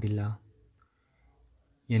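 A man's voice reciting Stations of the Cross prayers in Malayalam. It breaks off early, leaves a pause of about a second and a half with one faint click, then starts again near the end.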